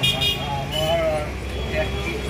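Indistinct talking in a busy shop over a steady low rumble of street traffic, with a brief high-pitched toot right at the start.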